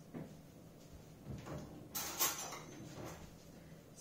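Quiet kitchen handling sounds, with a short scraping rustle about two seconds in, like a drawer being slid.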